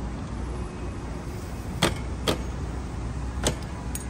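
Three sharp clicks from hand work on a sportbike's rear axle and chain adjuster: two about half a second apart, then a third about a second later. A steady low rumble runs underneath.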